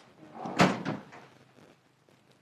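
A door shutting, one sharp knock about half a second in, followed by a few faint clicks.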